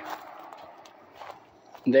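Faint footsteps on dry grass and dirt, a few soft crunches over a quiet outdoor background.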